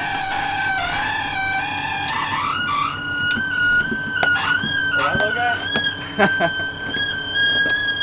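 Excavator hydraulics whining under load as a rock on a rope is lifted straight up out of a pit; the whine climbs in pitch two to three seconds in and then holds steady. A few sharp knocks of rock come through in the second half.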